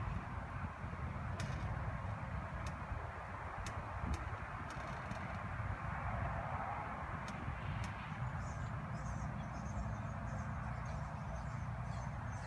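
Quiet outdoor ambience: a steady low rumble and hiss, with a few faint, sharp high ticks and, from about two-thirds in, faint high chirps.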